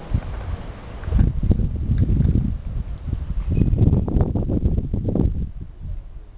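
Wind buffeting the camera's microphone: an uneven low rumble that swells about a second in, surges again around the middle, and dies away near the end.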